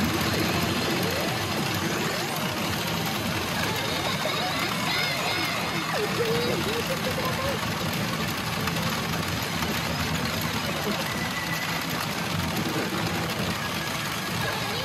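Steady din of a pachinko parlor: the constant clatter of steel balls and the machines' electronic sound effects, with brief pitched snatches from the Re:Zero pachinko machine's effects rising over it now and then.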